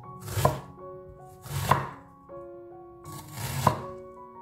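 A wide cleaver-style kitchen knife slicing through a red onion onto a wooden cutting board: three cuts, each a short crunch ending in a knock on the board. Background music runs underneath.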